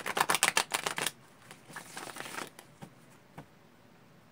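A tarot deck being shuffled by hand: a rapid run of card flicks in the first second, a softer rustling shuffle around two seconds in, then a couple of light taps.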